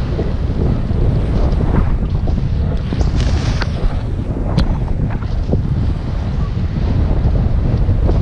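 Wind rushing over the camera's microphone from the airflow of a paraglider in flight: a loud, steady buffeting rumble, with a few short clicks in the middle.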